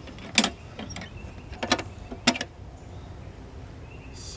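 Green metal ammo can being shut and its lid latch clamped down: a few sharp metal clicks and clanks, the loudest about half a second in, as the can is sealed up.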